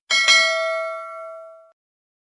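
Notification-bell 'ding' sound effect, struck twice in quick succession and then ringing out, fading away within about a second and a half.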